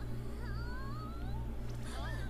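A high, squeaky, wavering whine from the cartoon's soundtrack, a run of short glides that mostly rise in pitch over about a second, with another starting near the end. Underneath is a steady low hum that dips a few times a second.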